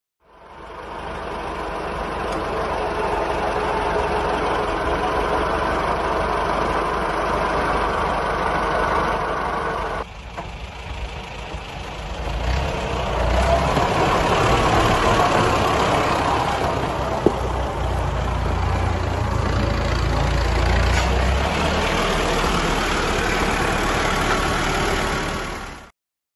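1948 David Brown Cropmaster tractor's four-cylinder engine running on TVO, fading in and running steadily. After a cut about ten seconds in, it drives along a gravel track and grows louder and deeper as it comes close, with one sharp click midway, then fades out.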